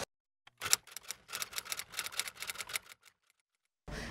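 Treadle sewing machine stitching cloth: a quick run of mechanical clicking that starts about half a second in and stops about three seconds in.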